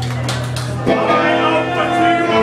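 Live rock band music with steady low held notes, and a new sustained pitched note coming in about a second in.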